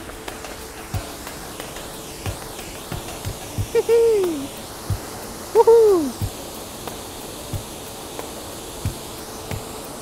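Steady rushing of a waterfall swollen by heavy rain. About four seconds in come two short hoot-like calls, each falling in pitch, with a few small handling knocks.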